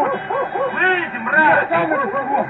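Men shouting angrily in a heated argument, loud raised voices with high, strained cries about a second in and again half a second later.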